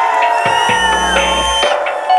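Electronic backing track playing sustained synth notes that glide slowly in pitch, over a deep bass tone that enters about half a second in and cuts off shortly before the end.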